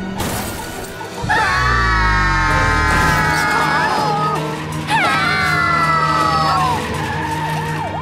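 Cartoon car-crash sound effects over background music: a sharp crash at the start and a deep thud about a second in, then two long high screeches, each held for two to three seconds and falling slightly in pitch, as the runaway car skids.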